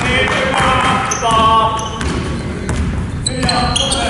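A basketball being dribbled on a gym's hardwood court, with players' voices calling out, loudest in a shout a little over a second in, and short high sneaker squeaks near the end.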